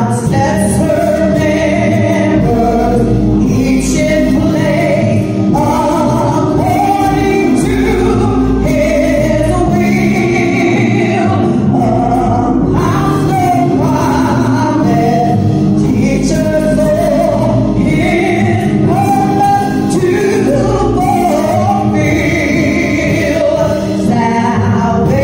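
A woman singing a gospel song solo into a handheld microphone, with long held notes that bend up and down, over steady low sustained accompaniment.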